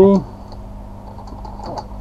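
Computer keyboard typing: a few light, irregular keystrokes.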